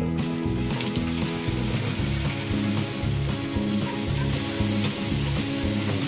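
Sizzling from a hot nonstick frying pan as cooking oil and sliced sausages fry in it, setting in about half a second in and then running steadily.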